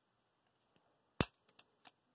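A single sharp metallic click about a second in, then a few faint ticks: a steel screw-pin shackle being picked up and handled.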